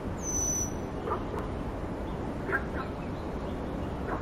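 Blue whistling thrush giving one thin, high-pitched whistled call, lasting under a second, near the start, over a steady low background rumble.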